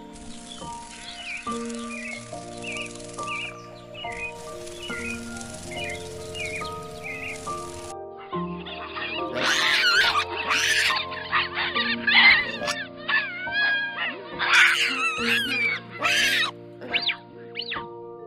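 Background music throughout, with small faint chirps in the first half. From about halfway, loud, high, wavering calls of hamadryas baboons come in over the music, in a run of repeated cries that stop shortly before the end.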